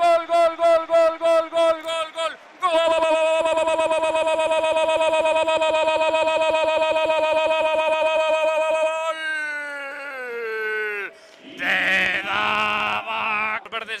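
A Spanish-language sports commentator's goal call: a quick run of repeated "gol!" shouts, then one long held "goool" of about six seconds that falls in pitch as it ends, followed by more excited shouting.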